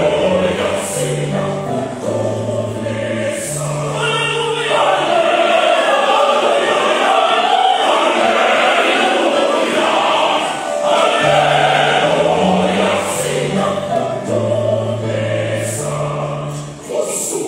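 Mixed choir singing in parts, with long held low notes stepping beneath the upper voices and brief breaks between phrases.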